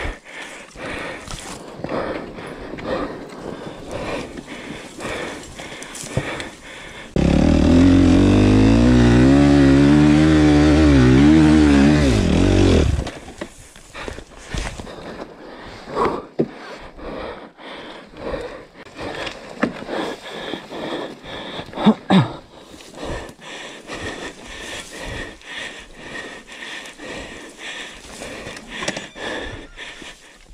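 Suzuki RM-Z 250's single-cylinder four-stroke engine revving hard for about six seconds, its pitch wavering up and down; it starts and stops abruptly about a quarter of the way in. Before and after it, quieter scraping and knocks of the bike being handled on loose dirt.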